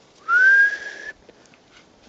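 A person whistling to call puppies: one whistle of about a second that slides up in pitch and then holds steady.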